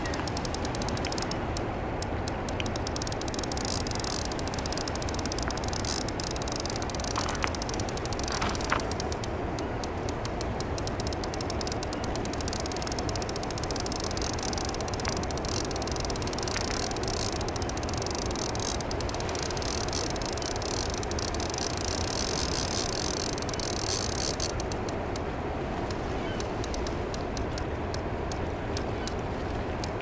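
Steady rush of fast, turbulent river water below a dam's outflow, an even noise that holds at one level throughout. Two faint clicks come about seven and nine seconds in.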